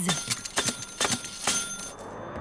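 Cartoon bus ticket machine being worked: a quick series of button-press clicks under a high, bell-like ringing tone as tickets are issued.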